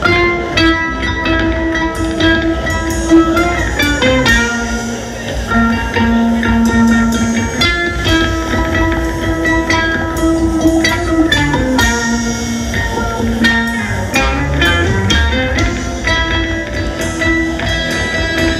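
Instrumental rock from an electric ukulele run through an effects-pedal chain, with a drum kit. The ukulele plays long held notes that step down and back up every few seconds, over the drums.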